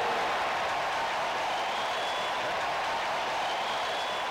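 Stadium crowd cheering and applauding steadily after a called third strike.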